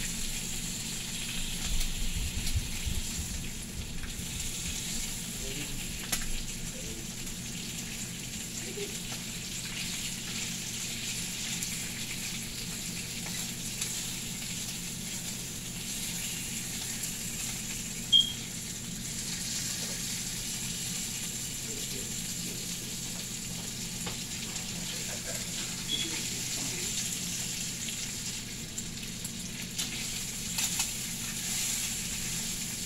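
Bacon sizzling steadily in a frying pan while a fork turns the strips, with light scrapes and taps now and then. There is one sharp click a little past the middle.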